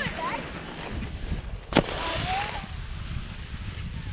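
Wind buffeting the microphone of a GoPro action camera carried by a moving skier, a steady low rumble, with one sharp click or knock a little under two seconds in.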